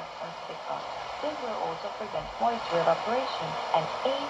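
Retekess TR618 portable radio's speaker playing a shortwave broadcast, tuned to 15770 kHz: a voice comes through under steady static hiss.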